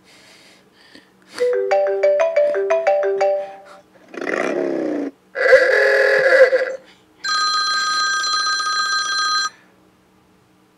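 A run of electronic tones like phone ringtones: a quick jingle of short beeping notes, then a falling sweep, a buzzy warble, and a steady ringing tone that stops near the end.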